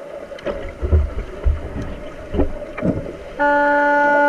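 Heard underwater: irregular dull thuds and knocks of water churned by players and fins close by. About three and a half seconds in, a loud, steady, single-pitched horn blast starts; this is the underwater signal horn used to stop play in underwater rugby.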